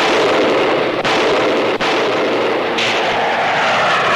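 Film battle sound effects: a loud, dense din of explosions and gunfire mixed with jet aircraft noise, thin in the bass, with two brief dips about one and nearly two seconds in. Near three seconds in, a higher hiss joins as the jet noise comes forward.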